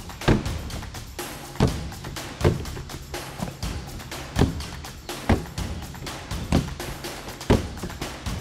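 Seven heavy thuds of kicks and punches landing on a free-standing punching bag, at irregular spacing of about one to two seconds, over background music.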